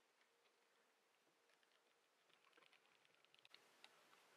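Near silence, with a few faint small clicks in the second half.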